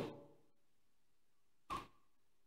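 Near silence broken by a single short computer mouse click near the end.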